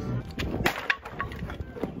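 Wooden pallet slats being wrenched and broken apart by hand, with a few sharp cracks and knocks of wood clustered around the middle.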